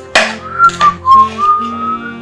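A man whistling a short, sliding tune over background music with plucked guitar and sharp percussive beats.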